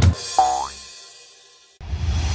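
A cartoon boing sound effect, one tone that slides upward in pitch and then fades, right after a children's song's last note. Near the end, a whoosh starts as the scene changes.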